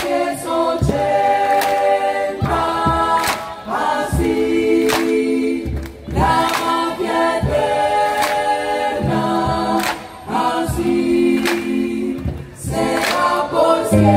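Live band music: a choir singing sustained chords with horns and keyboard, over a steady beat of drum strokes.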